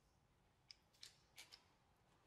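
Four faint, sharp metallic clicks within about a second, from fingers picking at pellets in an open metal pellet tin.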